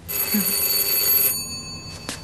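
Doorbell ringing: one steady ring that starts at once, lasts about a second and a half, then fades out.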